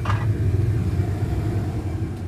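Steady low rumble of the fire in a furnace for melting bronze alloy, with flames leaping from its mouth.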